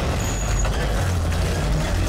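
A loud, deep rumble with a noisy hiss above it, beginning abruptly at a cut.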